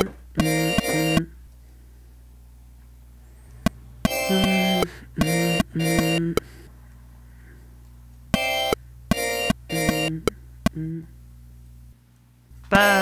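Short chopped clips of a church-bell pad synth note played back in a repeating pattern: groups of two to four brief pitched hits, about two seconds apart. Each hit starts and cuts off abruptly with a small click at the clip edge.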